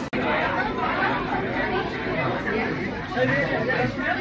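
Indistinct chatter of several people talking in a restaurant dining room, no single voice standing out. There is a very brief dropout just after the start.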